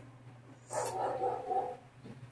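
A tearful girl crying: one short, high, wavering sob about a second long, starting a little past halfway into the first second, over a faint steady low hum.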